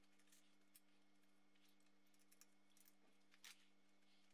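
Near silence: a faint steady low hum with a few faint, brief ticks and clicks, the clearest near the end.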